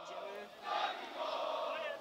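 Football supporters chanting together in the stands, a crowd of mostly male voices. It gets louder about half a second in.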